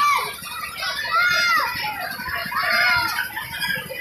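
Riders on a spinning fairground ride letting out high, rising-and-falling whoops and squeals, several of them, about one every second.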